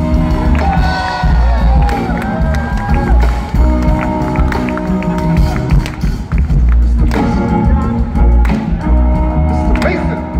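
Live band playing through a stage PA: guitar with bass and drums, held chords over a heavy low end, with crowd voices and cheering over the music.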